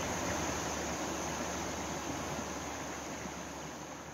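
Floodwater of a swollen river rushing past in a steady, even roar of water that slowly fades out.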